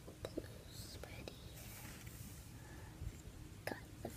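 A few soft clicks as a rubber band is stretched onto a plastic Rainbow Loom pin, with faint whispering in between.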